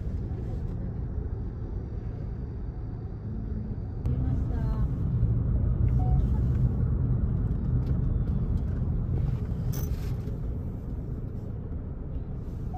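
Road noise heard from inside a moving car: a steady low rumble of engine and tyres that gets louder about four seconds in.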